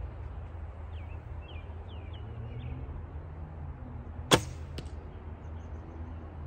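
A 35-pound Bodnik Mingo bow shot once, with a sharp crack of the string on release. A fainter knock follows about half a second later as the arrow strikes the target. Small birds chirp faintly before the shot.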